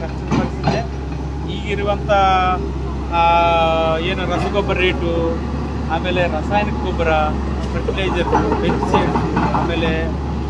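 A Tata Hitachi crawler excavator's diesel engine running steadily as a low hum behind a man talking.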